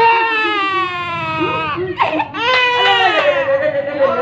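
Infant crying hard in two long wails, each falling in pitch, with a quick gasp for breath about two seconds in. This is the crying of a baby in pain from a fresh vaccination injection.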